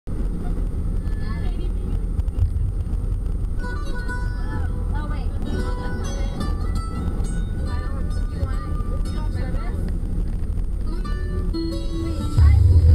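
Steady low rumble of a van's cabin on the road, with several women's voices chatting indistinctly over it and some music in the background.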